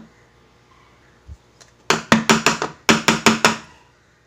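Aluminium cake tin full of batter tapped against a stone counter to settle the batter: two quick runs of about five sharp knocks each, starting about halfway through.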